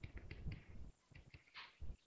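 Faint, short clicks and taps of a pen stylus on a tablet screen while writing, about six quick ticks followed by a slightly longer scratch near the end.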